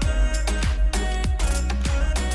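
Outro music with a steady beat: regular percussive hits over a held bass line.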